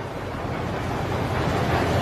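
Train rumbling through a tunnel: a low rumble under a rush of noise that swells louder toward the end as it nears the exit.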